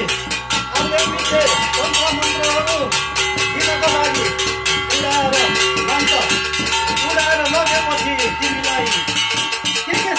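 Brass plates beaten rapidly and evenly with sticks, about nine strokes a second, their metal ringing on between strokes. Shamans chant over the beat in rising and falling phrases.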